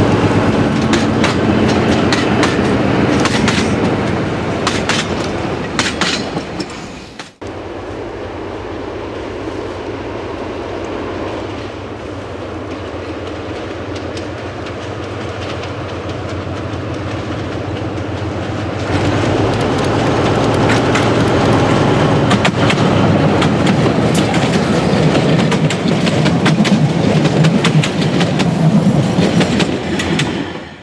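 A narrow-gauge diesel locomotive hauling coaches runs past, its engine rumbling under the clatter of wheels over the rails. The sound breaks off abruptly about seven seconds in and resumes quieter, then swells from about nineteen seconds in as the train comes close and passes.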